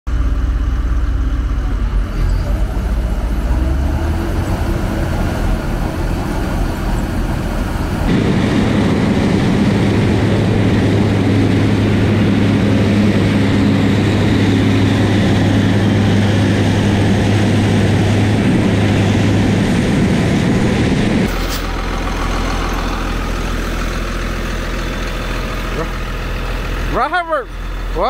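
Heavy farm machinery running, in a series of cuts: a John Deere combine's engine, then a louder stretch with a steady low hum from a John Deere 4450 tractor working under an unloading auger, then a quieter steady engine sound. A man's voice comes in near the end.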